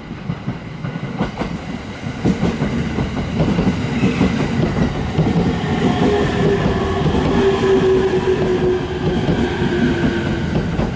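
Commuter electric multiple-unit train running along the station platform, growing louder as it arrives, its wheels clicking over the rail joints. From about halfway a steady whine, falling slightly in pitch, joins in as the train slows.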